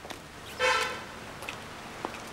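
A single short car horn toot, about half a second long, starting about half a second in.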